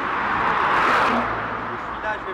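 A car passing by on the street: its engine and tyre noise swell, peak about a second in, and fade away.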